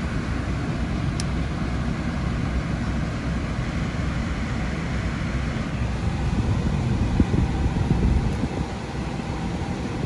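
Turbocharged 1.5-litre three-cylinder engine of a 2017 MINI Cooper Countryman idling steadily, heard from inside the cabin.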